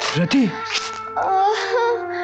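Dramatic film background score with long held notes, over a pained voice moaning and gasping in short breathy bursts.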